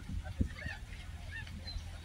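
Waterfowl calling in a few short honks over a low wind rumble on the microphone, with one sharp bump about half a second in.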